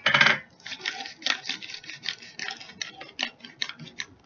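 Pepper being dispensed from a pepper dispenser: a short louder clatter at the very start, then a quick run of small clicks and rattles, about five a second.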